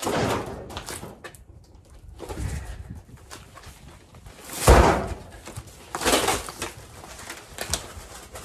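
A large cardboard box holding a boxed workbench being slid and handled, with cardboard scraping in several short bouts and one heavy thump a little past halfway as it is set down, then the box flaps being pulled open near the end.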